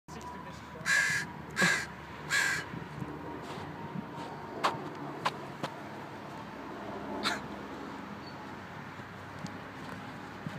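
A bird gives three harsh calls in quick succession about a second in, each under half a second long. A few sharp clicks follow later, spaced apart.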